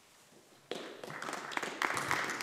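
Applause from members in a debating chamber, starting about two-thirds of a second in after a short silence and growing to the end.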